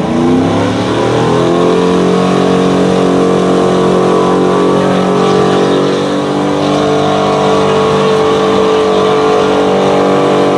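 Chevrolet pickup truck's engine revving up hard under load while pulling a weight sled, then held at high revs. Its pitch rises over the first couple of seconds and then stays nearly steady.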